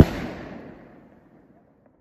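Aerial firework shell bursting overhead: one sharp bang right at the start, followed by a rumbling echo that fades out over about a second and a half.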